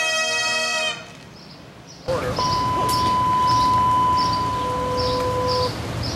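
Bagpipes holding a final note over their drones, which stops about a second in. After a short hush, outdoor background noise returns, with a steady high whistle-like tone for about three seconds and short high chirps repeating about twice a second.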